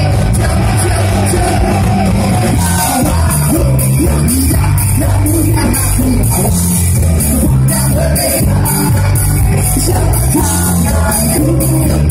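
Live rock band playing loud through a PA, electric guitars, bass and a drum kit with a steady, even cymbal beat, picked up from the crowd on a phone microphone.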